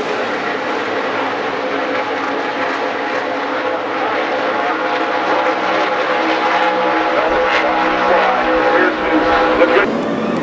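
A field of NASCAR Cup stock cars running on the oval, their pushrod V8 engines sounding together in a steady, layered drone.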